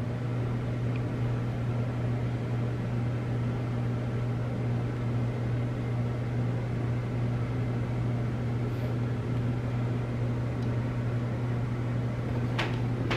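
A steady low hum over an even hiss, unchanging throughout.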